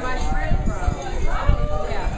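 Indistinct conversation, with irregular low thumps underneath.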